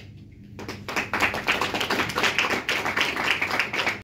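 Audience applause breaking out about half a second in, once the classical guitar piece has ended, and growing fuller after about a second.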